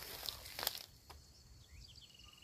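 Soft rustling and a few light knocks from a banana plant's stem and leaves being cut and bent with a machete, the sharpest knock about two-thirds of a second in.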